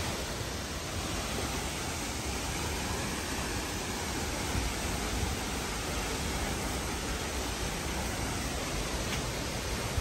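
Waterfall plunging into a pool: a steady, even rush of falling water with no break.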